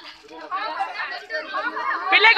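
Background chatter: several people talking at once.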